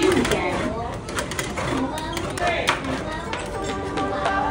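Metal spatulas chopping and scraping on the frozen steel plate of a stir-fried yogurt (rolled ice cream) stall, a quick run of clicks and scrapes, with voices talking over them.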